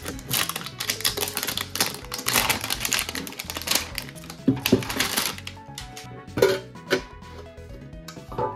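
Plastic shrink-wrap crinkling and tearing as it is pulled off a metal Pokémon card tin, then a couple of sharp clicks near the end as the tin's lid is popped open.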